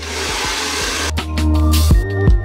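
Background electronic music with a heavy bass. For about the first second it sits under a rushing, hiss-like noise that fades out, and the music grows louder after that.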